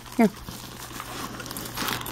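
Packaging crinkling and rustling as it is rummaged through, louder near the end.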